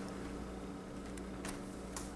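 Faint handling of Theory11 Union playing cards as a table fan is gathered up, with two soft clicks near the end over a steady low hum.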